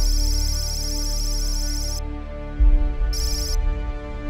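Sci-fi ambient background music with long held tones, overlaid by high-pitched electronic data-chirping sound effects: one long stretch in the first two seconds and a short burst a second later. A deep low rumble hits about two and a half seconds in, the loudest moment.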